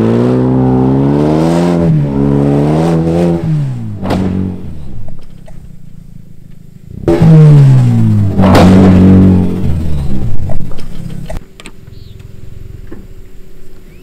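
Hyundai Veloster Turbo's turbocharged engine revving hard on a dirt road, its pitch rising then falling over about four seconds. After a short lull a second loud burst of revving drops in pitch, with sharp knocks as the car hits a trench at the road's edge.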